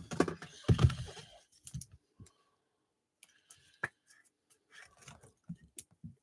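Trading cards being handled by hand: a low bump about a second in, then scattered light clicks and plastic ticks as the cards are shifted and tapped.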